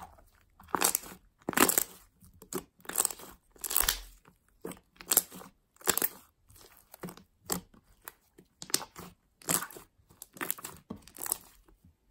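Large fluffy slime being squeezed, pressed and kneaded by hand, giving short squishing noises in an uneven run of about one or two a second.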